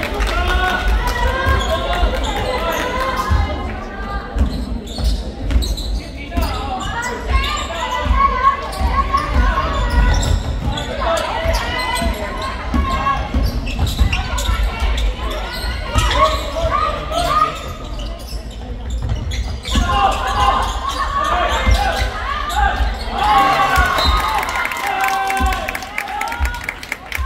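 Basketball game play on a hardwood court in a large echoing hall: the ball bouncing repeatedly, sneakers squeaking on the floor and players' voices calling out.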